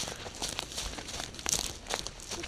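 Footsteps crunching through dry fallen leaves and twigs, a run of irregular crackles with the loudest about one and a half seconds in.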